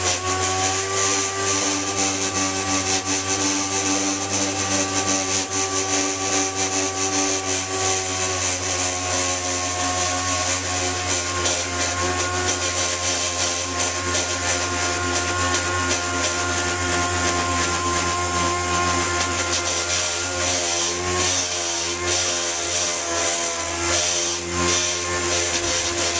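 Dual-action (DA) orbital sander running steadily against a car fender, sanding away spray-can paint and primer to prep it for repainting. The sander's pitch wavers slightly as it is worked over the panel.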